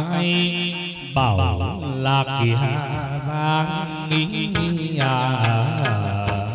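Chầu văn ritual music: a chanted vocal line with a strongly wavering pitch over accompaniment from the ritual band, including a two-string fiddle (đàn nhị). One phrase breaks off and a new one starts about a second in.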